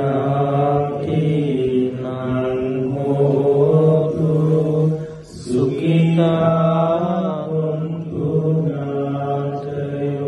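Theravada Buddhist monks chanting in Pali through a microphone, in long drawn-out male notes with a short breath pause about five seconds in; the chant accompanies the pouring of water for the transfer of merit to the deceased.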